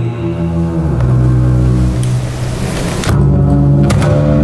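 Solo double bass played with the bow: held low notes, a rougher, grainier stretch in the middle, then a louder sustained note about three seconds in and a sharp attack just before the end.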